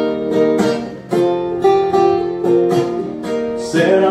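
Acoustic guitar strummed in a steady country rhythm, chords ringing between evenly spaced strokes, with no voice over it.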